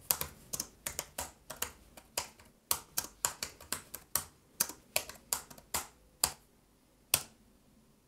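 Typing on a computer keyboard: about twenty quick keystroke clicks at an uneven pace, then a single last keystroke about a second later.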